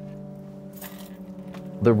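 Background music holding a steady chord, with a brief jingle of keys a little under a second in.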